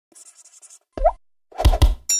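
Cartoon sound effects for an animated logo: a faint quick flutter, then a short rising plop about a second in, then two loud thumps near the end.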